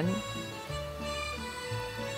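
Background music at a moderate level: a light Mexican-style instrumental tune with held melody notes over a steadily moving bass line.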